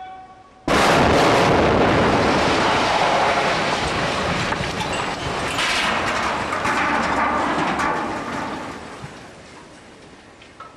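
Demolition charges going off with a sudden loud blast about a second in, followed by the long rumble and crashing of a multi-storey building collapsing, which dies away over the last two seconds.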